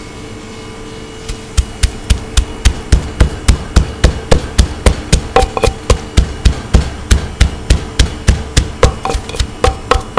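Wooden pestle pounding garlic and chillies in a clay mortar. It strikes in a steady rhythm of dull thuds, about three a second, starting a little over a second in.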